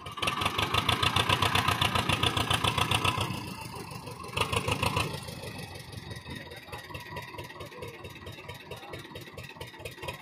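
Tractor diesel engine revved hard for about three seconds, dropped back, revved again briefly, then settled to a steady idle, straining to pull a stuck tractor and loaded trolley out of soft field ground.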